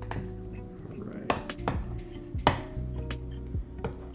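Spoons clinking against a glass measuring cup and a metal muffin pan while cupcake batter is scooped into paper liners: about five sharp clinks, the loudest near the middle, over background music.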